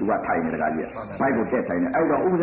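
Speech only: a voice talking without a break.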